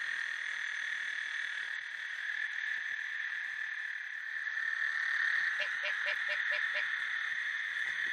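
Night chorus of frogs and toads calling, a steady high trilling din, the breeding calls of males in the rainy season. Between about five and seven seconds in, one caller adds a string of short notes, about five a second.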